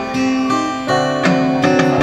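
Live band playing an instrumental passage of an Italian dance song: strummed acoustic guitar with electronic keyboard chords, the chords changing every half second or so.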